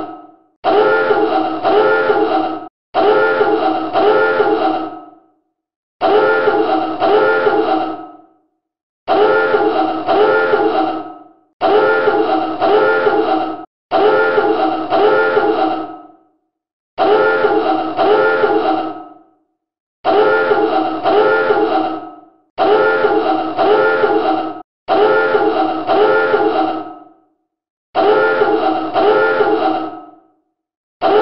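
Submarine dive alarm sounding in repeated blasts, each about two seconds long and fading at its end, with a short gap before the next: about eleven blasts in all.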